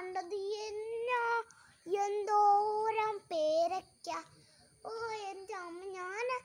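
A young girl singing, holding long steady notes in a few short phrases with brief pauses between them.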